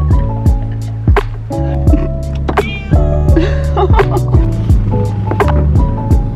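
Background music with a steady beat of about two drum hits a second over sustained bass and held notes.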